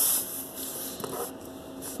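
A short hiss near the start, then faint handling noise with a few light clicks as a plastic Lego piece is moved about the toy house.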